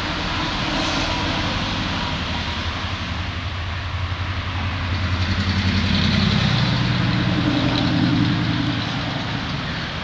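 An engine running steadily with a low hum. It grows louder and higher in pitch from about halfway through, then eases off near the end.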